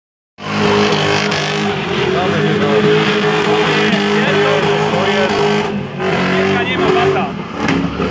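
BMW saloon's engine held at steady high revs while the car drifts in circles, its rear tyres spinning and squealing on a dusty surface. The engine note dips briefly about six seconds in.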